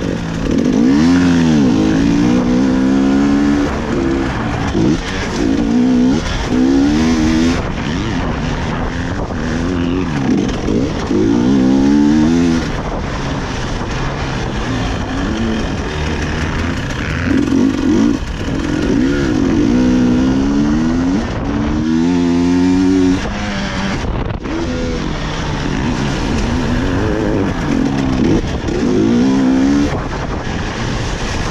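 300 cc two-stroke enduro motorcycle engine revving up and falling back again and again as the rider opens and closes the throttle through the corners.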